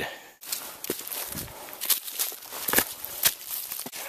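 Footsteps of a backpacker walking on a forest trail strewn with dry leaves: irregular steps with sharp crackles.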